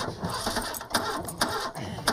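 Car starter motor cranking the engine: an uneven mechanical whirr broken by irregular clicks.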